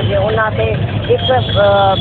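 A woman talking continuously over a steady low engine hum, like a motor vehicle idling close by.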